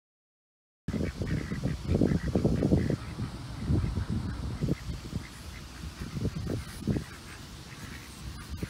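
Ducks quacking, starting about a second in, over irregular low rumbling noise on a phone microphone.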